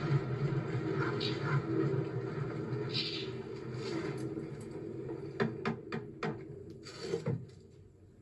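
Knocking on a wooden door from a film soundtrack played through a TV speaker: several sharp knocks about five seconds in, after a low rumble that fades away.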